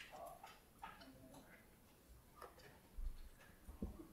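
Near silence broken by faint scattered clicks and light knocks of desk handling, with a couple of low thumps near the end as a councillor leans in to her desk microphone.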